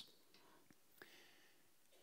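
Near silence: room tone in a pause in speech, with two faint clicks a little before and at the middle.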